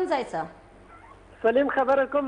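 Speech only: a voice trails off with a falling pitch, a pause of about a second, then talking resumes with rising and falling intonation.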